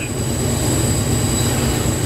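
GE diesel locomotive heard from inside its cab, running steadily under load as it climbs a grade: a deep continuous rumble with rail and running noise over it.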